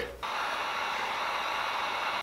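Electric heat gun running: a steady hiss of blown hot air that switches on just after the start. It is aimed at a soft-plastic lure to reshape its misshapen nose.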